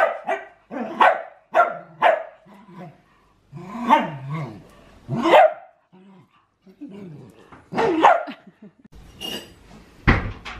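Small dogs barking excitedly while play-fighting: several short, sharp barks at irregular intervals, bunched in the first few seconds and sparser towards the end.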